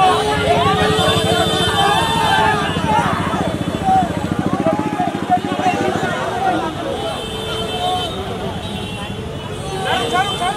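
Dense street crowd, many voices shouting and calling over each other, with a vehicle engine running underneath.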